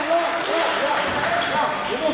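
A handball match on an indoor court: players' voices calling out over a few thuds of the ball bouncing on the hall floor, with the echo of a large sports hall.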